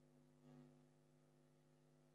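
Near silence: a faint steady electrical hum, with one faint brief sound about half a second in.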